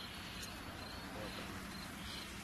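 Steady hiss with faint, repeated high-pitched insect chirping.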